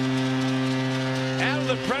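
Arena goal horn giving one long, steady, low blast after a home goal, cutting off abruptly near the end.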